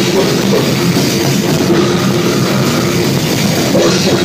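Live brutal death metal played loud by a full band: dense drumming on a drum kit with cymbals under heavy, distorted guitars and bass, with no break.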